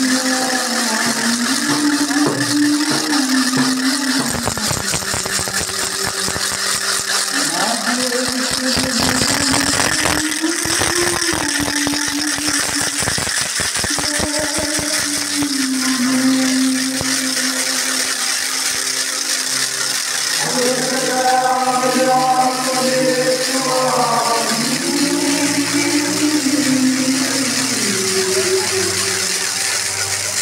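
Slow singing with long held, gliding notes, a hymn, over a steady hiss of crowd noise. A low crackling rumble runs under it from about four seconds in until about seventeen seconds.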